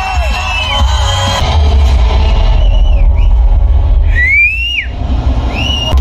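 Loud film soundtrack music played in a cinema, with a steady deep bass, and several shrill whistles that glide up and fall away over it, the longest about four seconds in.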